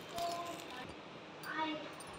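Quiet room sound with a faint voice in the background about a second and a half in.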